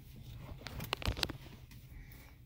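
Low, steady hum of a car's engine heard inside the cabin, with a few soft clicks a little over half a second to about a second and a half in.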